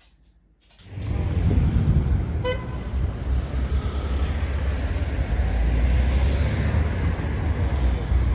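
Outdoor waterside street sound, dominated by a loud, fluctuating low rumble of wind buffeting the microphone, starting about a second in. A short high beep sounds once about two and a half seconds in.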